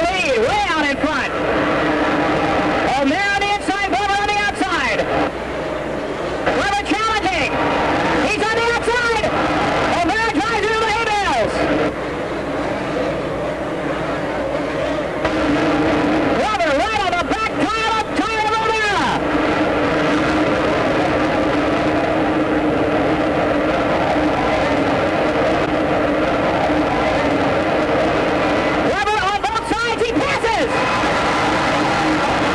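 Two-stroke motocross bikes racing, their engines revving up and down in repeated bursts of rising and falling pitch over a steady background din.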